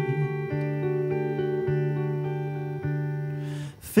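Clean Gibson semi-hollow electric guitar playing a short instrumental phrase between sung lines: held chords that change every second or so and ring out, fading toward the end.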